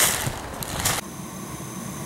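High-power vacuum hissing as it sucks rust chunks out of a one-inch steam condensate line, with two louder rushes, cutting off about a second in. Then a gas-fired cast-iron steam boiler running with its burners lit: a quieter steady hum with a faint high whine.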